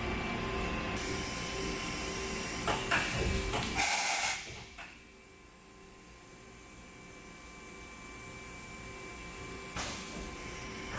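A vertical machining center runs with a steady hum, and a few mechanical clicks come about three seconds in. A brief loud burst of hissy noise follows near four seconds, and then the running noise drops away to a much quieter hum.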